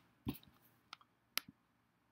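A few faint, sharp computer clicks: about four single clicks, two of them close together near the middle, as a pointer clicks through a menu.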